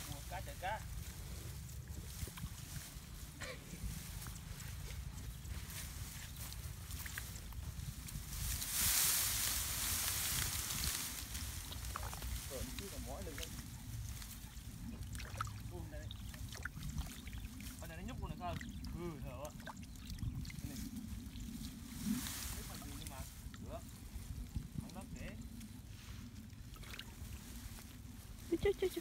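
Hands groping through thick mud and shallow water, squelching and sloshing as they feel for fish. A louder hiss lasts a couple of seconds about nine seconds in.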